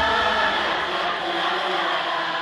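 A large concert crowd singing a wordless 'da da da' line together, unaccompanied with no beat behind it, a mass of voices slowly getting quieter.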